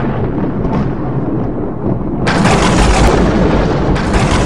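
Cinematic logo-intro sound effect: a loud, deep continuous rumble, with a sudden louder crash about two seconds in that keeps rumbling on, like thunder or a distant explosion.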